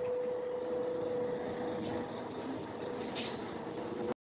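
Street noise from running vehicles, with a steady humming tone that fades out about halfway through.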